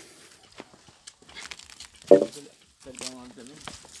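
Dry palm fronds and brush crackling and rustling with footsteps, with short bits of voice about halfway through and again near the end.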